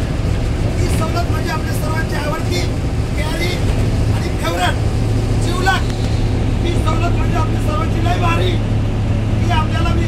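A man speaks loudly and continuously to passengers inside a moving bus, over the steady low drone of the bus engine.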